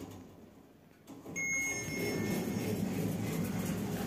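Mogilevliftmash passenger lift's automatic sliding doors closing. After a quiet first second a short bell-like ding rings out and fades, and the steady low rumble of the door operator and sliding panels begins and carries on.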